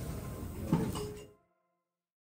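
A sharp knock about three-quarters of a second in, over steady background sound. Then everything fades out to silence about a second and a half in.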